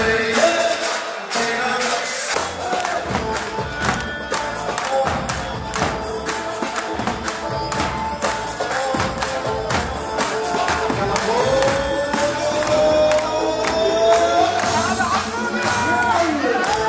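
Zaffe wedding troupe playing: large drums beaten in a steady, driving rhythm with jingling percussion, and a voice singing over it.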